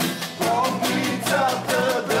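Acoustic guitar strummed in a steady rhythm, about four strums a second, with voices singing a folk-style song along with it.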